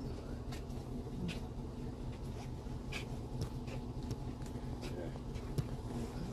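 Steady low machine hum of a shop's background, with a few faint steady tones, and light clicks and rustles scattered through it, with one sharper tick near the end.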